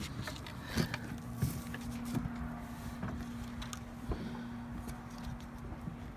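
Light clicks and taps from a flexible plastic strip cut from a coolant jug, being handled and fitted along the wooden frame of a sign, over a steady low hum.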